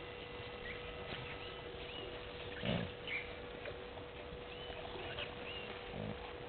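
Wild bush sounds: scattered short bird chirps over a steady tone, with one brief low animal call a little before halfway, the loudest sound here.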